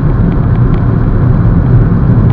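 Steady low road and tyre noise inside a moving VW Jetta's cabin, with the engine barely audible under it. The driver thinks the floor pan may need more soundproofing.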